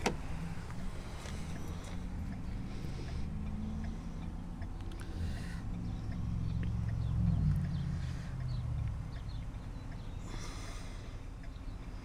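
A sharp click at the very start, then a motor vehicle's low engine rumble that swells about seven seconds in, rising briefly in pitch, and dies away by about nine seconds, like a vehicle going by.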